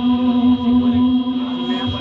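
Devotional kalam chanting: a single steady drone note held throughout, with voices chanting over it.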